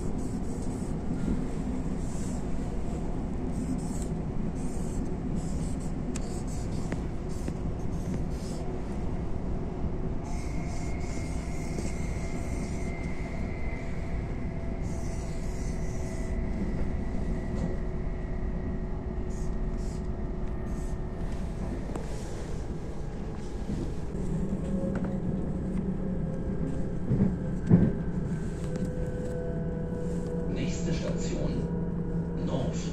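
Inside a moving electric commuter train: a steady low rumble with a faint motor whine that slowly falls in pitch from about a third of the way in. Over it come short scratchy strokes of a marker pen on the floor and ledge, and a sharp knock near the end.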